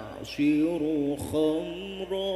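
A young man's voice reciting the Quran in melodic tilawah style into a microphone, holding long ornamented notes that waver in pitch, with a short break near the start.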